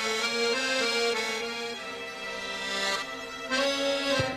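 Instrumental break in a pop song: an accordion plays a slow melody of held notes over a sustained low chord.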